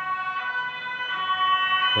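Emergency vehicle siren sounding steadily in the distance, its tone switching back and forth between two pitches.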